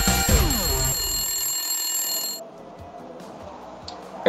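Short electronic intro jingle with bell-like ringing, sweeping down in pitch in the first second and dying away. After about two and a half seconds it gives way to a quieter background.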